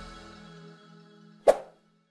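Outro music fading out, then a single short pop about a second and a half in: the click sound effect of an animated subscribe button.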